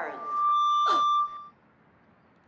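Megaphone feedback whine: one steady high tone held for about a second, with a sharp click partway through, then cutting off suddenly.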